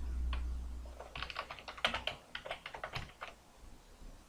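Typing on a computer keyboard: a quick run of about a dozen keystrokes from about a second in, entering a short name.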